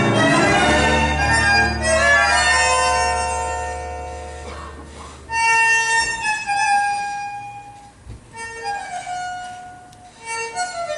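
Argentine tango orchestra music. A loud, full passage fades away over the first five seconds, then a quieter phrase of long held notes begins and fades again near the end.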